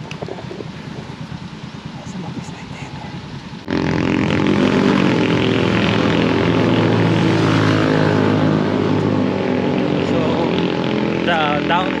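Fainter outdoor ambience, then from about four seconds in a loud, steady engine drone made of several held tones that barely change in pitch.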